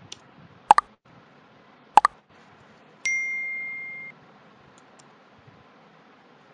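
A quick double click about a second in and another sharp click near two seconds, then a computer's electronic ding: one steady tone that fades slightly over about a second, then cuts off.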